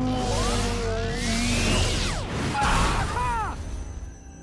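Cartoon action music with whooshing sound effects and a long rising sweep, then a short noisy impact with falling chirps about three seconds in, as a glowing shield appears and blocks a falling car.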